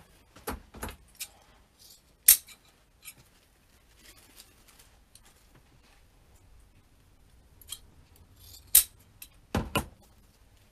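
Scissors snipping ribbon, with light rustling of ribbon and artificial greenery being handled between the cuts. The sharp clicks are spread out, the loudest about two seconds in and another near the end. A couple of duller knocks come just before the end.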